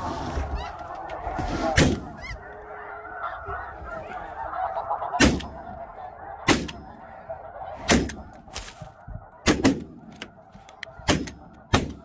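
A flock of snow geese honking and calling, broken by a string of about eight or nine shotgun shots from several hunters, most of them bunched in the second half.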